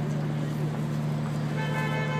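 City street noise with a steady low hum; near the end a horn-like toot begins.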